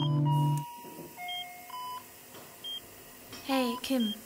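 Electronic beeps from hospital patient-monitoring equipment: short high beeps about once a second, among a few longer, lower tones. Before them, a synthesizer chord from the music ends abruptly within the first second, and a voice begins to speak near the end.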